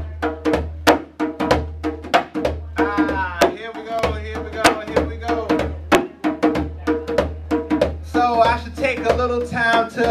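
A hand drum struck with the bare hand in a quick, steady rhythm of about three sharp strokes a second.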